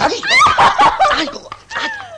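Laughter in quick repeated bursts, loudest in the first second or so.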